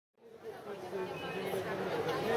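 Indistinct chatter of people talking in a crowded street, fading in from silence just after the start and growing louder.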